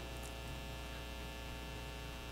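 Steady, faint electrical mains hum: a low tone with a ladder of evenly spaced overtones over light hiss.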